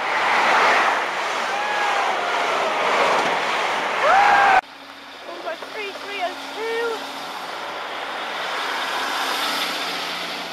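High Speed Train (InterCity 125) passing through the station at speed, a loud rushing sound of wheels and engines that cuts off abruptly about four and a half seconds in. After that, a Class 153 diesel railcar stands with its engine running as a quieter low hum, with a few faint short chirps over it.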